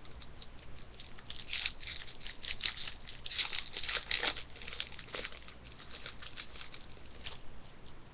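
Wrapper of a hockey card pack crinkling and tearing as it is opened by hand: a quick run of crackles, busiest in the middle.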